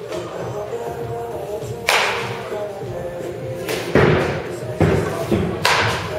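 Baseball bat hitting balls in a batting cage: a series of sharp impacts, about four in all, roughly every one to two seconds, each with a short ringing tail, over background music.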